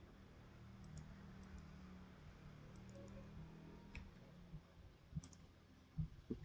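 Near silence: a low steady hum of room tone with a few faint, scattered computer mouse clicks.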